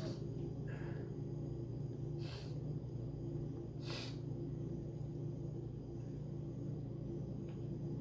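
Steady low room hum, with two brief soft noises about two and four seconds in as a man bites into and chews a slice of fruit cake.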